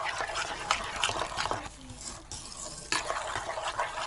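Metal spoon stirring flour into yeasted water in an enamel bowl: wet scraping strokes with sharp clinks of the spoon against the bowl, briefly quieter a little past the middle.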